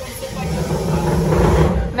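Busy restaurant's background noise: a steady low rumble with indistinct chatter.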